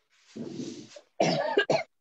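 A person coughing once, a rough, noisy burst, followed by a short spoken word and a laugh.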